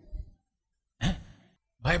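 A man's short audible sigh about a second in, during a pause in his speech. His speech resumes near the end.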